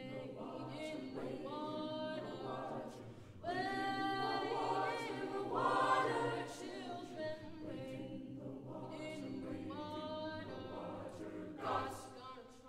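A high school choir singing sustained notes in several parts. About three and a half seconds in the choir swells to a louder, fuller passage, which peaks around six seconds and then eases back.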